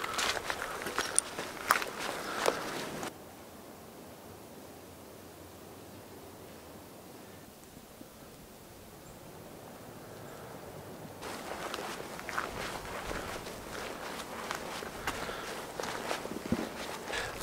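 Footsteps on dry leaf litter and gravel. They stop suddenly about three seconds in, leaving only a faint outdoor hush, then start again about eleven seconds in.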